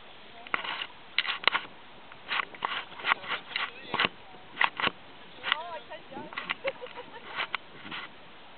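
Indistinct people's voices in short, scattered exclamations, with sharp noisy bursts in between.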